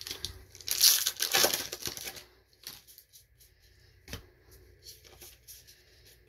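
A plastic Magic: The Gathering booster pack wrapper being torn open and crinkled, loudest for about a second and a half near the start. After it come quieter rustles of the cards being handled, with one tap about four seconds in.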